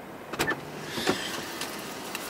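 Two sharp clicks about two-thirds of a second apart inside a parked car's cabin, followed by a few lighter ticks and rattles.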